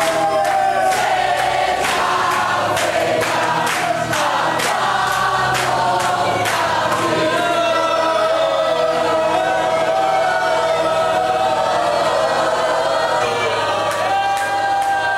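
A congregation singing a worship song together, clapping in time at about two claps a second for the first half, after which the clapping stops and the singing goes on.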